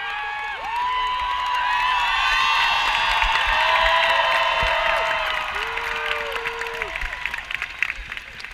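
Large crowd cheering and whooping, many voices swelling to a peak midway and then falling away, with scattered clapping near the end.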